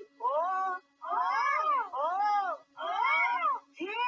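A high woman's voice giving a string of about five drawn-out, sing-song calls, each rising and then falling in pitch, in a meow-like way.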